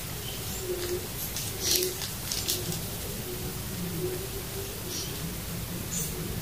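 Clear plastic wrapping on an artificial flower bouquet crinkling in a few short rustles as it is handled, the loudest about two seconds in. Underneath, a bird coos over and over at a low pitch.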